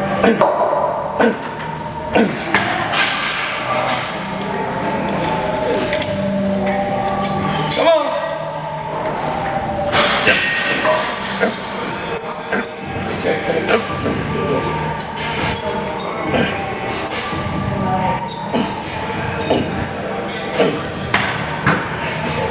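Metal clinks and clanks from a gym cable machine during tricep push-downs, as the attachment and clip are worked and swapped, with voices and background music. Sharp clicks come repeatedly throughout.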